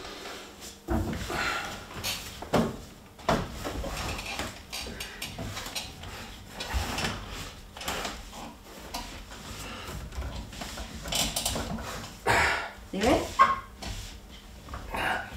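Irregular knocks, clunks and rustling as a man shifts his weight from a wheelchair onto an exercise bike's seat and grips its handlebars, with short voice sounds near the end.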